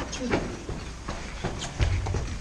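Quick footsteps on the loose, gritty floor of a concrete tunnel, with a low thump near the end.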